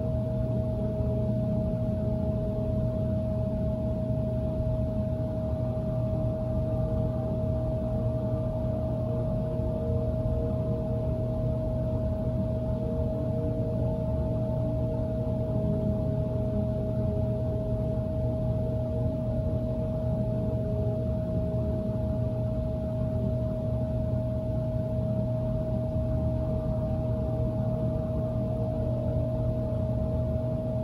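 A steady, unchanging drone: one held mid-pitched tone over a constant low hum, with no breaks or changes.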